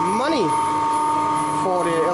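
A 20 kW three-phase alternator, belt-driven by a Francis turbine, running steadily under load as it feeds power into the grid: a constant machine hum with a high steady whine.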